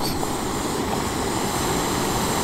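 Soto Windmaster canister stove burning under a pot with a steady, even hiss.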